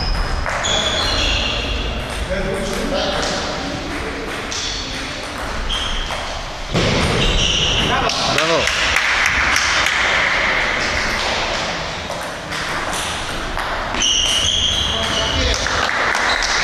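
Table tennis rally: the ball clicking sharply off the bats and the table in quick back-and-forth exchanges, with voices in the hall behind.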